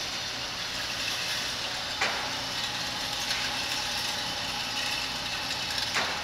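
Electric target carrier of an indoor shooting range running steadily along its overhead track, bringing the paper target back to the booth. There is a sharp click about two seconds in and another near the end.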